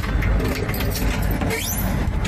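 A key turning in the lock of a glass shop door as it is unlocked and pushed open, with scattered clicks over a steady rumble of street noise; a short rising squeak near the end.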